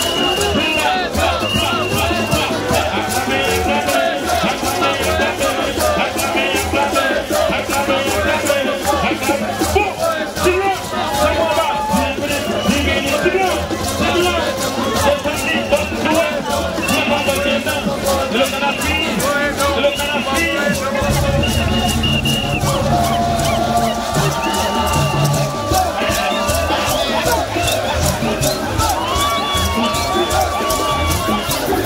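Live Haitian rara band music, loud and driving, with a rhythmic shaker pulse and short repeated high notes, over a crowd shouting and singing along. The bass becomes heavier about two-thirds of the way in.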